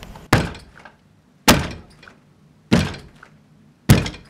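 Heavy pounding blows at a steady pace, four of them about a second and a quarter apart, each a sharp thud that rings off briefly.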